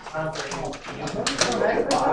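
Indistinct voices of several people talking, with a few short sharp clicks about halfway through.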